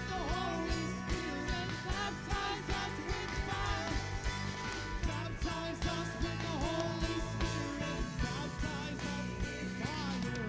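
Live worship music: a keyboard holding chords under voices singing a melody, with a steady low beat.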